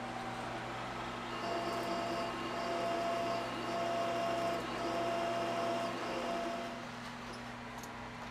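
Milling machine running in back gear with a one-inch end mill cutting pockets in an aluminium plate. There is a steady motor and gear hum throughout. From about a second and a half in until near the end, a higher whine from the cut joins it in stretches of about a second, with brief gaps between them.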